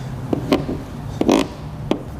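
Fingers pressing and smoothing wet tint film onto a plastic headlight lens: a few short clicks and one brief rubbing noise a little past the middle.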